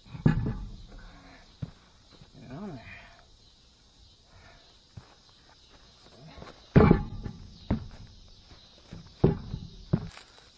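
A heavy truck tire on its steel wheel being wrestled onto the hub by hand: dull thumps and knocks, the loudest just after the start and about seven seconds in, with a brief grunt-like voice sound near three seconds.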